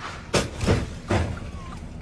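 Three short, rough thumps in quick succession, heard from inside a vehicle cab in a snowstorm, over a steady rushing background noise.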